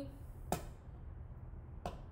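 Two light, sharp taps about a second and a half apart as a plastic-cased magnetic wand is set down on a copper penny on a wooden lid. The penny is not attracted to the magnet.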